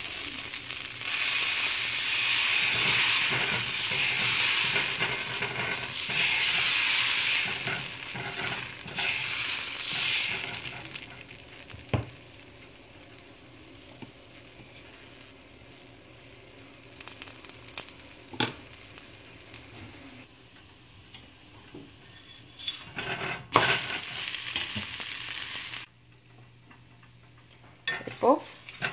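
Dosa batter sizzling on a hot tawa as a ladle spreads it round in circles, loud and scratchy for about the first ten seconds. Then a much quieter sizzle as the dosa cooks, with a few sharp clicks, and a short loud sizzle again near the end.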